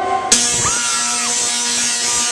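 Tesla coil firing: a loud, harsh electrical buzz of spark discharges that starts suddenly about a third of a second in and holds steady. It is arcing at around 1.2 million volts.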